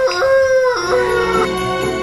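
A girl singing long held notes in a high voice, stepping up and down in pitch between them. About a second in, background music starts under it.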